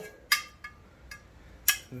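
Metal rod clinking against the square steel bar stock as it is fitted into the drilled hole: two sharp metallic clinks with a brief ring, about a second and a half apart, with a few faint ticks between.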